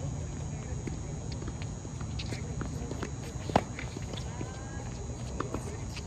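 Tennis rally on a hard court: sharp, scattered pops of a tennis ball struck by rackets and bouncing, with the loudest strike about three and a half seconds in, amid players' footsteps.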